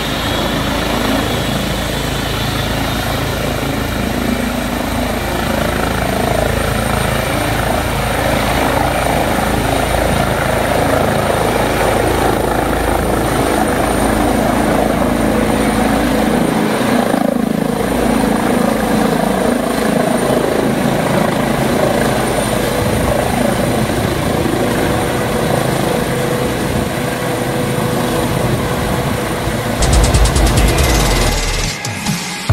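Rescue helicopter's turbine and rotor running loudly on the ground, then lifting off and climbing away overhead about halfway through.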